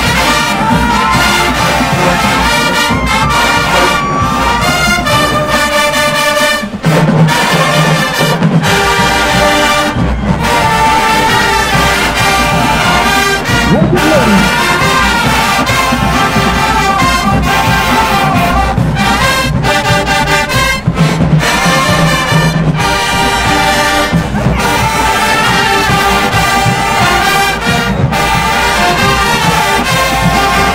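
A marching band playing loudly, a wall of brass (trumpets, trombones, sousaphones) over drums, with a brief break about seven seconds in.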